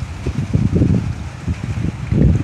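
Irregular, gusting low rumble of wind buffeting the recording microphone, swelling strongly about halfway through.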